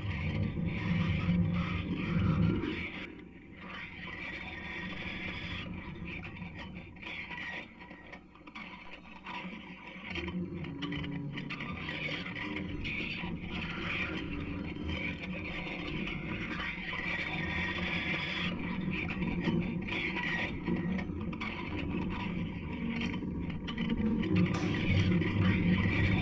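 Experimental electronic music played live from a laptop: dense, shifting noise textures with no beat. A low hum underneath fades out about three seconds in and comes back near ten seconds.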